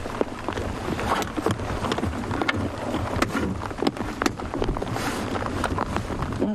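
Hard rain on an open safari vehicle: many irregular sharp drop ticks close by, over a steady low rumble.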